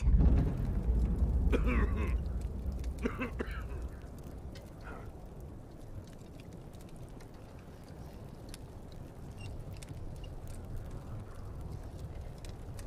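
A deep low rumble swells at the start and fades away over the first few seconds. Under it, a steady low wind noise runs on, with the light crackle of a campfire ticking throughout.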